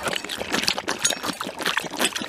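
Water being poured from a plastic canteen into a shallow metal pan, splashing and trickling unevenly.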